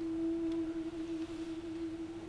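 One long held note from a live soprano-and-cello performance, kept at a steady pitch and close to a pure tone with only faint overtones.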